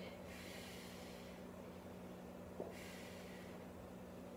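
A person breathing hard with the effort of dumbbell chest presses: two breaths, one at the start and one near the end, with a faint click just before the second, over a steady low hum.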